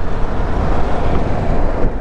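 Steady rush of wind over the microphone of a motorcycle riding at speed in the rain, with the bike's engine and wet tyre noise underneath.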